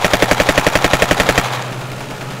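Automatic rifle firing one rapid burst of over a dozen shots a second, lasting about a second and a half and stopping abruptly. A steady low hum runs underneath.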